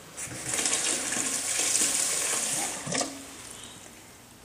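Kitchen faucet running cold water into a stainless steel stockpot of blanched blueberries in the sink: a steady hiss of filling water that stops about three seconds in.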